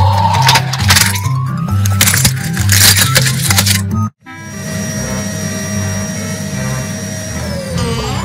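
Background music with a steady bass line, over which a plastic toy dinosaur cracks and crunches under a car tyre several times in the first four seconds. About four seconds in, the sound cuts out abruptly, and then the music resumes with long held tones.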